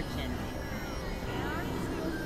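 Dense experimental electronic noise: a steady low rumble and hiss, with several tones sliding up and down in pitch over it.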